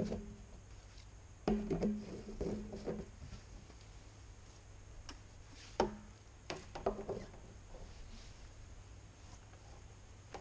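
Hollow plastic knocks and scraping as a PVC pipe is pushed into a rubber uniseal in the lid of a 220-litre plastic drum, the drum ringing low with each knock, for about a second and a half. Later a single sharp knock and a few light clicks as plastic tubing is handled.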